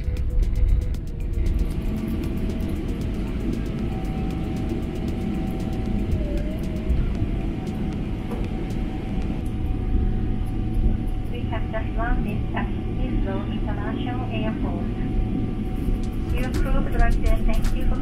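Steady low rumble of a Boeing 777-300ER's cabin as it slows after touchdown and taxis, heard from a window seat over the wing. About two-thirds of the way in, a voice over the cabin PA starts an announcement.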